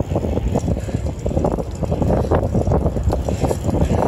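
Wind buffeting the microphone of a phone carried on a bicycle ridden fast, with the tyres rolling on asphalt: a gusty, steady rumble.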